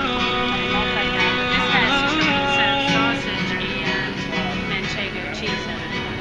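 Music: a guitar playing with a singing voice, from a street musician performing live.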